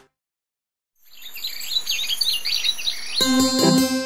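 Silence for about a second, then birds chirping: quick, high, repeated calls that fade in. About three seconds in, a bouncy keyboard tune starts over them.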